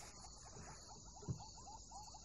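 Faint outdoor ambience: a steady high insect-like buzz with a rapid run of short chirps, about six or seven a second. A single low thump comes a little over a second in.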